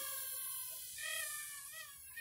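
Sharper Image LED Stunt Drone's small quadcopter motors whining in flight: a faint, high-pitched whine that wavers in pitch, rising a little about a second in.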